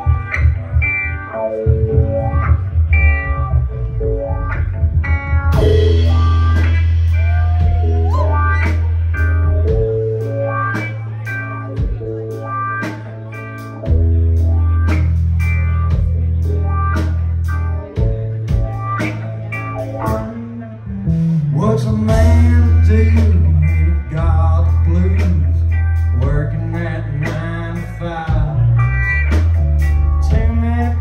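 Live band playing: electric guitar and bass guitar, with the drum kit and cymbals coming in about five seconds in and the band then playing on at full level.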